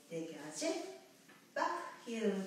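A woman's voice: two short spoken phrases, the first near the start and the second about a second and a half in.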